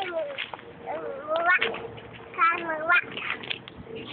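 A toddler making wordless, high-pitched vocal sounds: two drawn-out calls that waver up and down in pitch, about a second in and again past the middle, with short crackles between them.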